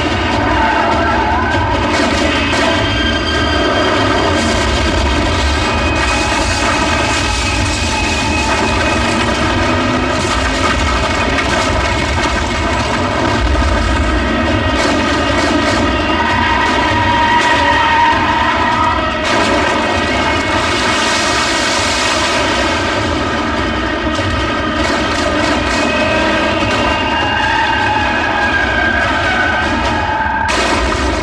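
Film action sound effects: a loud, steady vehicle engine drone, with a swell of rushing blast noise around twenty seconds in as an explosion goes off.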